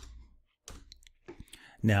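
A few light, scattered clicks from a computer keyboard and mouse as a number is typed into a web form, spread over about a second in the middle.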